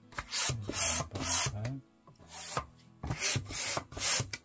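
Hand balloon pump worked back and forth, giving a rasping rush of air on each of several quick strokes as it inflates a red latex balloon.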